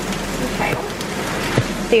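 Vegetables sizzling steadily in a hot wok on a gas stove, with one short knock about one and a half seconds in.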